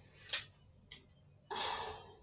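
A thin strip of scrap wood being snapped by hand: a sharp crack, a faint click, then about half a second of rough crackling near the end.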